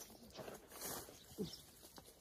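Faint rustling of pea vines and leaves being pulled from a garden trellis, with a brief faint falling tone about halfway through.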